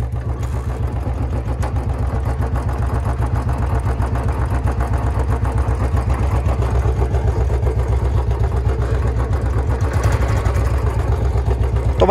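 Two Royal Enfield Bullet 350 single-cylinder engines idling together with a steady low beat, growing a little louder over the first few seconds. The louder one is the BS3 bike, which has a free-flow short silencer and runs at higher revs with more engine noise than the BS4 on its original silencer.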